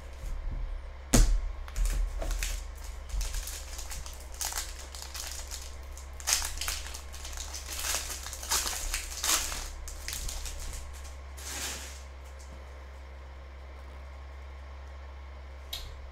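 Foil wrapper of a Panini Prizm football card pack crinkling as it is torn open and the cards are pulled out, with a sharp crack about a second in. The crinkling stops about twelve seconds in, leaving a low steady hum.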